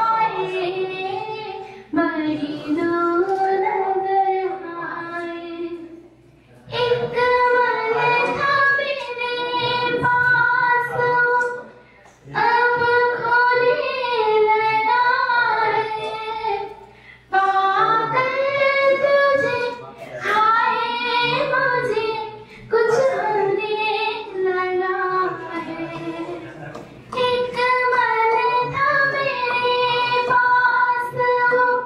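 A young woman singing unaccompanied into a handheld microphone, in phrases of a few seconds with short breaks for breath between them and held notes that bend up and down.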